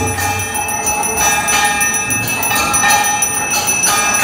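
Temple bells rung continuously during aarti worship, a dense metallic ringing with repeated strikes, over low drum beats that come about once a second.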